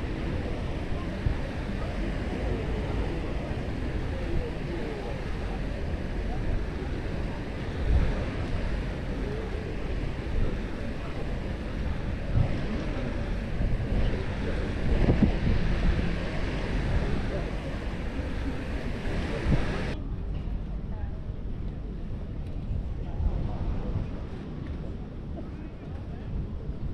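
Beach ambience: wind rumbling on the microphone over surf and the chatter of people close by. About twenty seconds in, the sound abruptly turns duller as the hiss above it falls away.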